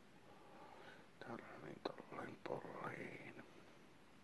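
A man's voice whispering, quiet and indistinct, for about two seconds in the middle, with a couple of sharp clicks among it.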